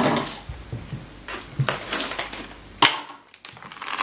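Crackers crunching and crinkling inside a plastic package as they are crushed, in several irregular bursts, with a sharp click just before three seconds in and a short lull after it.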